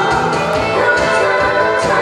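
A woman singing a Korean popular song into a handheld microphone, amplified, over musical accompaniment with a steady beat.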